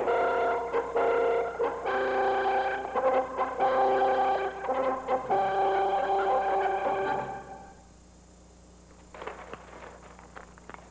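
Film score music with brass playing held chords, fading out about seven and a half seconds in. A few faint scuffs follow near the end.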